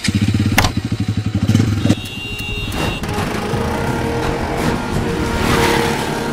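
Motorcycle engine running with a fast, uneven pulsing beat for about the first two seconds. Background music follows, with a swelling whoosh near the end.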